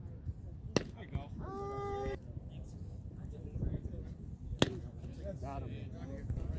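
A baseball popping sharply into a leather glove under a second after the pitch is released, then a drawn-out call from a voice. A second sharp glove pop comes about four seconds later, over outdoor crowd background.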